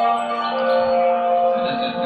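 Marching band music: a sustained chord with bell-like tones, with a new note entering about half a second in.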